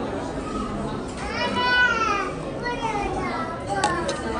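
Dining-room chatter of many voices, with one high-pitched voice calling out, its pitch rising and falling, about a second in. A short sharp click comes near the end.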